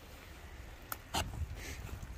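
Two sharp clicks about a second in, the second louder, from a knife being handled and pulled out of a plastic milk jug, over a steady low wind rumble.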